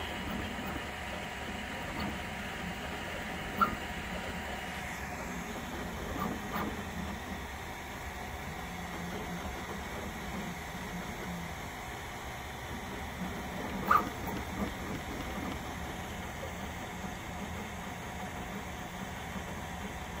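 Prusa XL 3D printer running quietly while printing its first layer: a steady soft hum of the printhead's motors and cooling fan, with two short clicks, one a few seconds in and one past the middle.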